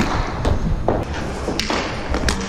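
About four sharp knocks, roughly half a second apart, of a hockey stick and inline skates striking a wooden rink floor, over the low, steady rolling noise of skate wheels.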